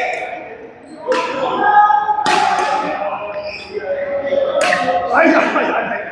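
Badminton rally in a large reverberant hall: three sharp racket strikes on the shuttlecock, about a second in, just after two seconds and near five seconds, each followed by a short echo.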